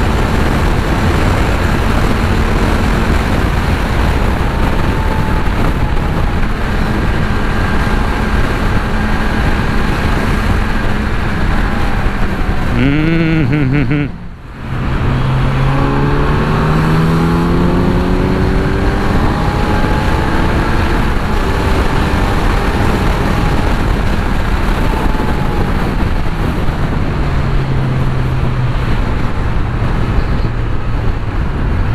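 Inline-four engine of a Kawasaki Z900 motorcycle running at highway speed under heavy wind noise on the microphone. About halfway through the sound drops out briefly, then the engine note climbs steadily as the bike accelerates hard to overtake, easing back down near the end.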